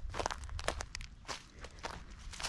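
Footsteps crunching on dry ground, a string of irregular short crunches.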